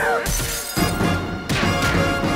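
Bus window glass shattering with a crash, then a second sharp crash about a second later, over loud background music.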